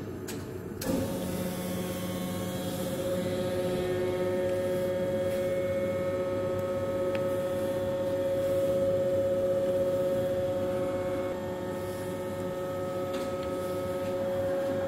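Reishauer RZ 362A gear grinding machine being switched on at its control panel: a click, then about a second in its motors start and run with a steady hum and whine.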